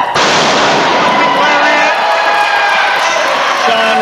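A wrestler's body crashing onto the ring canvas at the end of a missile dropkick: one sudden loud slam at the start, then an echoing noise that fades over about two seconds.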